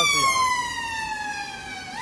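Ambulance siren in its wail mode as the ambulance passes and pulls away: one long tone falling slowly by about an octave, getting quieter, then swinging back up right at the end.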